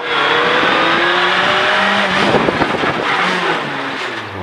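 Renault Clio N3 rally car's four-cylinder engine heard from inside the cabin under load, its pitch rising steadily for about two seconds over loud tyre and road noise, then the revs falling as it comes off the throttle in the last second or so.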